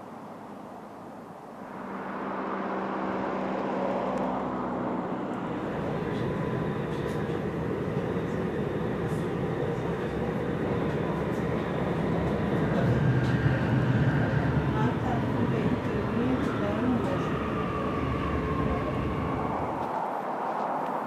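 Train running, heard from inside the carriage: a steady rumble of the wheels on the track that builds about a second and a half in, with a pitched motor drone for a few seconds as it starts.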